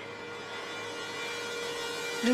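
A steady, unchanging drone tone from the background score, a held synth note that fills the pause between lines of dialogue.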